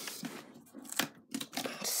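Cardboard and a plastic storage tote being handled: scraping and crinkling with a few sharp knocks, and a louder rush of scraping near the end.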